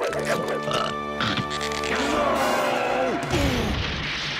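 Cartoon background music, with a long wavering glide falling in pitch in the second half, then a heavy crash of wooden boards breaking near the end.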